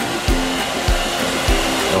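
Handheld electric hair dryer blowing a steady rushing hiss onto clay figures to dry them. Background music with a steady beat, about one beat every 0.6 seconds, plays underneath.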